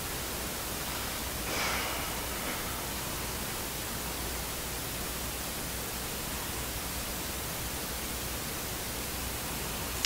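Steady hiss of background recording noise, with a low hum and a brief soft sound about a second and a half in.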